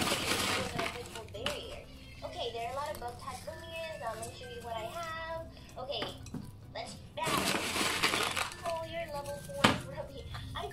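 Small gravel pebbles of top dressing rattling and clinking as they are poured by hand onto potted succulents, in two bursts: one at the start and one about seven seconds in. A single sharp click comes near the end.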